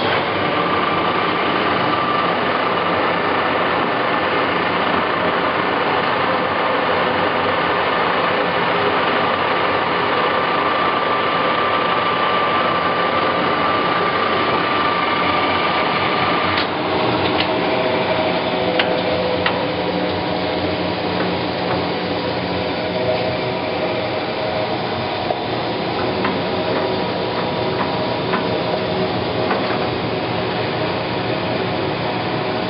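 Clausing Colchester 1550 engine lathe running under power, its three-jaw chuck spinning: a steady mechanical whir with a high whine. A little over halfway through the sound changes, the whine dropping out to a lower, duller run with scattered light ticks.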